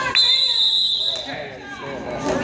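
Referee's whistle blown once, a steady shrill tone lasting about a second that cuts off sharply, as a foul is called in a basketball game.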